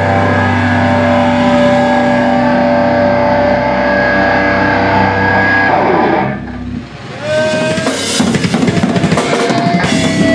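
A live metallic hardcore band plays with distorted electric guitars and bass holding ringing chords. About six seconds in the pitch slides down and the sound briefly drops. The drum kit and guitars then crash back in with fast, dense hits.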